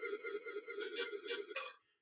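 A man's drawn-out wordless vocal sound, low in level and steady in pitch, lasting about a second and a half before breaking off.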